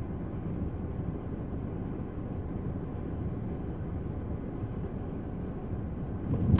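Steady low rumble inside a stopped car's cabin, from the car's idling engine and running heater.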